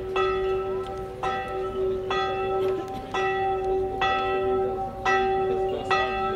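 A church bell tolled, struck about once a second, each stroke ringing on into the next over a steady low hum.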